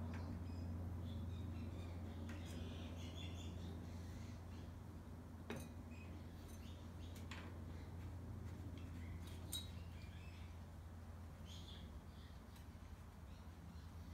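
Quiet background with a steady low hum and faint bird chirps, broken by a few light clicks as the oil filler cap is worked back onto a Briggs & Stratton lawnmower engine.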